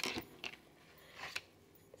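Tarot cards being handled on a table: a few faint taps as cards are picked up, and a short soft slide of card on card past the middle.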